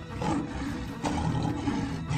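An animal roaring twice, the second roar starting about a second in, with background music faint beneath.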